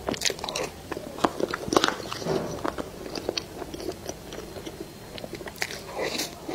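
Close-miked ASMR eating: bites and chewing, with a stream of irregular crunchy clicks and a few louder crunches.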